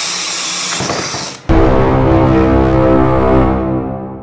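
A cordless drill with a hole saw boring through a plastic tub lid gives a steady whine. About a second and a half in it cuts off, and loud held intro music takes over and carries on to the end.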